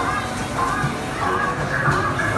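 A song playing from a coin-operated taxi kiddie ride, over the general background noise of an amusement arcade.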